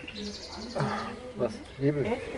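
Quiet speech: a man's hesitant murmur, then a short 'Was?'. A bird trills faintly in the background, a rapid high trill lasting about half a second near the start.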